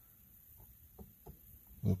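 Quiet car interior with a few faint, soft clicks, then a man's brief "uh" at the very end.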